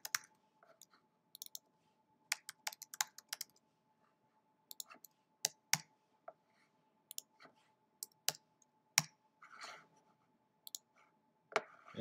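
Irregular keystrokes and clicks on a computer keyboard, some in quick runs with pauses between, as code is edited. A faint steady tone runs underneath.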